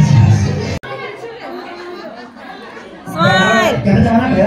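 Loud music with a heavy bass beat cuts off suddenly just under a second in. Quieter indistinct chatter of several people follows, with one clear voice rising above it near the end.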